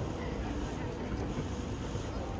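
Steady outdoor city ambience: a low rumble with wind buffeting the microphone and faint, indistinct voices of passers-by.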